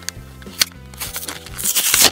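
Blister packaging of cardboard and plastic being pulled open by hand, crackling and rustling, busiest near the end, over steady background music.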